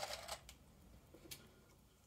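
A few faint clicks of small plastic model stadium seats knocking together in a plastic tub as they are picked out, with more in the first half second and a couple about a second in, then near silence.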